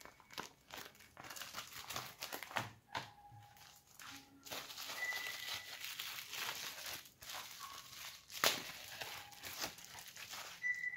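Bubble wrap and a paper delivery note crinkling and rustling as they are handled, in a dense run of irregular crackles. One sharper crackle stands out late on.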